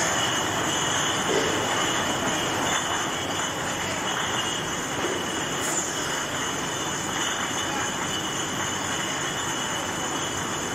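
Glass bottle depalletizer and factory line machinery running: a steady mechanical noise with two constant high-pitched whines over it.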